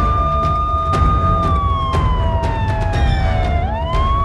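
Dramatic news-bulletin graphic music with drum hits and a deep rumble, overlaid with a siren sound effect: one wailing tone that holds, slowly falls, then sweeps back up near the end.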